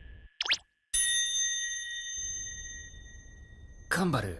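An anime sound effect: a brief rising swish, then a single bright ding about a second in that rings on and fades slowly for about three seconds.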